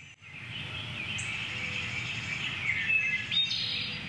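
Birds chirping and singing over a steady background hiss.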